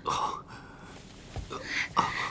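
A man gasping for breath twice, once at the start and again near the end: laboured, distressed breathing of someone who has been taken ill.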